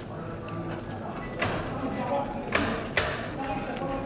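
Spectators' voices murmuring and calling out in a hall around a boxing ring, with three sudden loud sounds between about one and a half and three seconds in.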